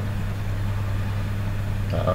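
A steady low hum with an even background hiss, with no change in pitch or level.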